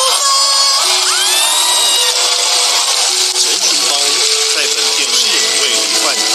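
An audience applauding and cheering, with music playing over it.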